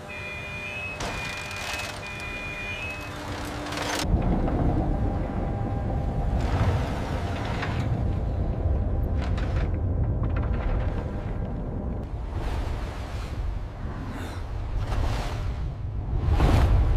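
Film sound design: three short high electronic beeps, then a sudden deep rumble about four seconds in that carries on under music, with repeated swells of noise.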